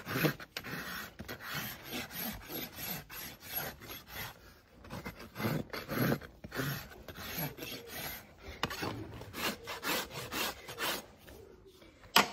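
Farrier's hoof rasp scraping across the horn of a large Shire-cross hoof in repeated back-and-forth strokes, levelling and shaping the freshly trimmed foot.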